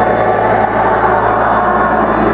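Church organ playing loud, held chords.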